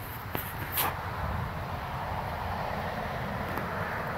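A couple of dry crackles from leaves and twigs underfoot in the first second, then a steady rushing noise that swells up and holds for the rest.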